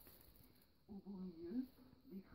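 Near silence, then a faint, brief woman's voice about a second in, hummed or spoken under her breath.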